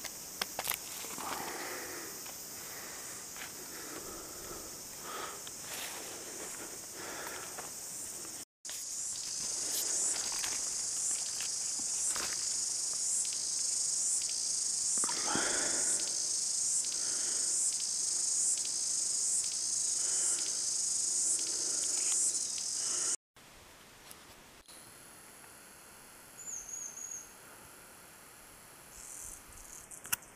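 Insect chorus in native forest: a high, steady shrill that pulses a little faster than once a second through the middle stretch, then falls away to faint forest sound after a cut near the end. Soft rustles and knocks from movement in the undergrowth sit underneath.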